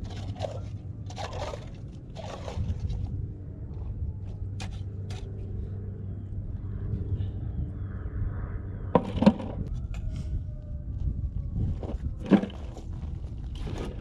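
Scattered hard knocks, clicks and scrapes of quahog clams and beach stones being handled in and against a plastic bucket. Two sharper knocks come after about nine seconds and twelve seconds, over a steady low rumble.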